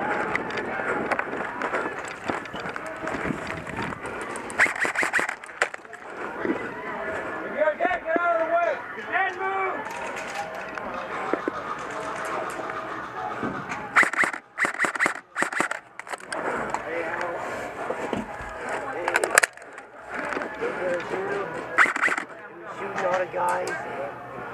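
Airsoft guns firing in short clusters of sharp clicks, the densest run about two-thirds of the way in, over indistinct voices calling out.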